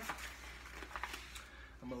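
Rustling and light scraping of an elastic compression belt's fabric layer as it is handled and pulled around the waist, with a few small ticks.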